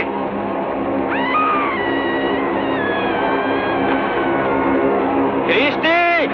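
A long wailing cry that starts about a second in, rises, then slowly falls in pitch for about four seconds, over sustained background music. Short, sharp cries break in near the end.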